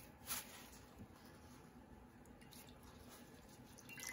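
Mostly quiet, with a short paper rustle about a third of a second in. Near the end come faint drips and splashes as a folded paper towel is dipped into a bowl of water to wet it.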